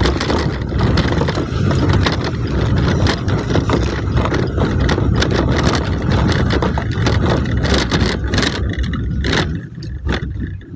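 Engine and road noise heard inside a vehicle driving on a rough gravel road, with frequent rattles and knocks from the bumpy surface. It grows quieter near the end.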